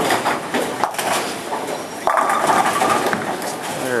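Bowling-alley lane noise: a ten-pin ball is released and rolls down the lane with a knock early on. About two seconds in comes a loud, sudden clatter of pins being struck, a good hit, over the steady din of the other lanes.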